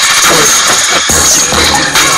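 Hip hop track's instrumental beat playing between rapped lines, with a deep bass note coming in about halfway through.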